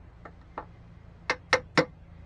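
Hammer tapping a chisel against a car emblem to knock it off: a couple of faint light taps, then three quicker, louder sharp taps in the second half.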